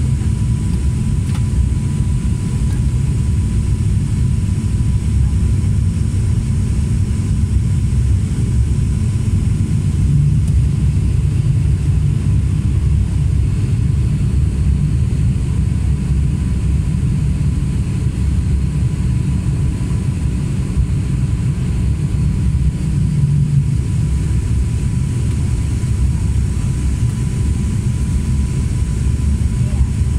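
Cabin noise of a turboprop airliner on its descent to land: the engine and propeller make a loud, steady low drone with a thin constant high tone running above it.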